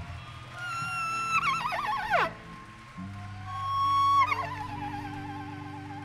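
Live band music in a slow passage: a low sustained drone under a high lead tone that holds, wavers and swoops down in pitch twice.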